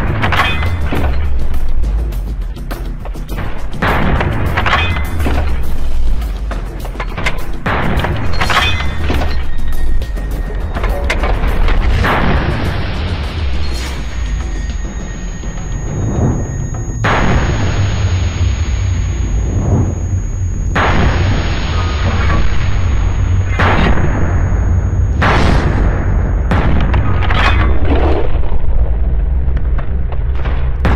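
Background music with a heavy, steady bass and repeated booming hits.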